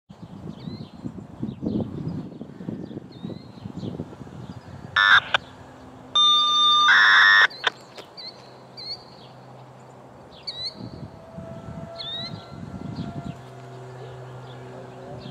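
Small birds chirping repeatedly over a low rumble. About five seconds in comes a brief loud pitched blast, then a steady tone lasting a little over a second, the loudest sounds here.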